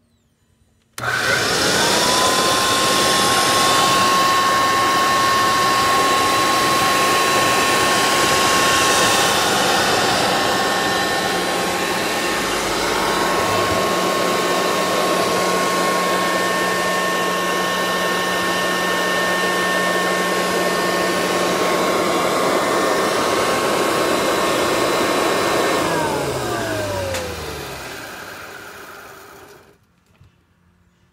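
Kirby Sanitronic 80 upright vacuum switched on about a second in: its motor whine rises quickly and settles into a steady high tone over a rush of air. It runs steadily for about 25 s, then is switched off and winds down with a falling pitch over a few seconds.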